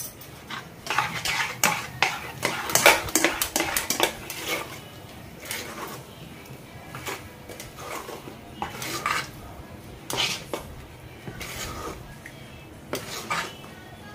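Steel spoon stirring and scraping thick semolina batter in a stainless steel bowl, with irregular clinks of metal on metal that come thickest in the first few seconds and then thin out. Eno fruit salt is being mixed into the fermented rava idli batter to leaven it.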